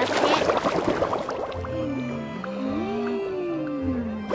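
A cartoon underwater sound effect standing for a crab blowing bubbles in the sea. It opens with a dense crackle of tiny bubbling pops, then low tones glide slowly up and down while light ticking goes on.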